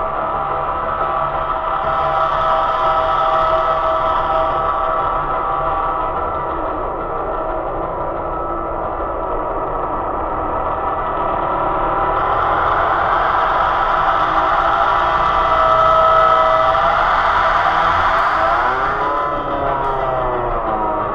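Eurorack modular synthesizer playing ambient music: layered sustained tones that grow brighter about halfway through, with sweeping pitch glides bending up and down near the end.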